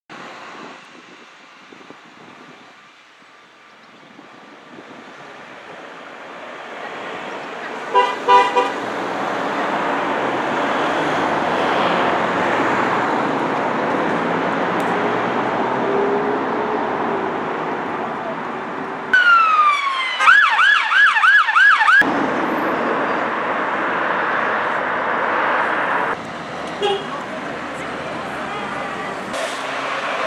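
Road traffic passing steadily, with a car horn sounding twice about eight seconds in. An emergency vehicle siren wavers rapidly up and down for a few seconds about twenty seconds in.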